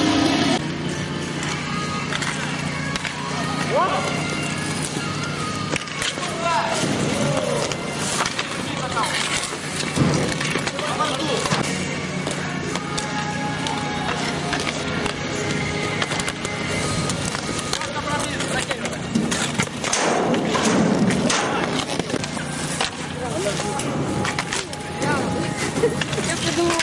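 Inline-skate wheels rolling on asphalt in a roller-hockey game. Scattered sharp clacks of sticks and ball ring out, with players' short shouts over them. Guitar music cuts out about half a second in.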